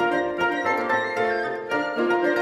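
Chamber wind ensemble of flutes, oboe, clarinets, bass clarinet, saxophones, bassoon and horns, with harp, playing a fast classical movement (Allegro con brio), with several quick note attacks a second over sustained chords.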